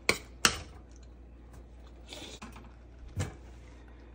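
A metal spoon knocking against a stainless-steel pot while mixing grated radish: two sharp clinks in the first half-second, then quiet with one more knock about three seconds in.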